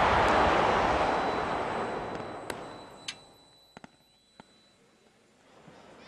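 A fireworks display dying away: a loud wash of sound fades out over about three seconds, followed by about five scattered sharp cracks from the last fireworks.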